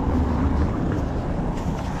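Low, steady wind rumble on the microphone, with faint rustles from the cardboard pizza box as its lid is lifted near the end.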